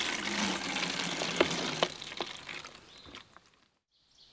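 Creek water squeezed through a pouch water filter and streaming into a plastic bottle, with sharp clicks and crinkles from the plastic. It fades out to silence near the end.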